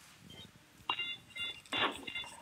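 Electronic beeping: short pulses of several tones sounding together, repeating quickly, starting about a second in, with one longer, louder burst near the end.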